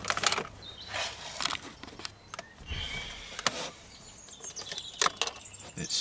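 Hard plastic armrest console of a Honda Civic FN2 being worked free and lifted out of the centre console: a series of irregular plastic clicks and knocks, with a brief scrape a little under halfway through.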